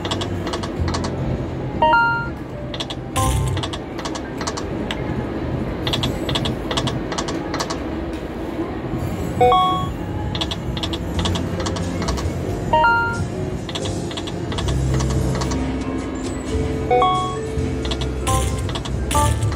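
Konami New York Nights poker machine spinning over and over, its reels giving off rapid clicking ticks, with a short run of three rising electronic chimes every few seconds as the reels stop. Steady low casino hum and machine music run underneath.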